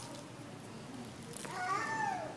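A high-pitched voice, starting about one and a half seconds in, rising and then falling in pitch, over faint room sound.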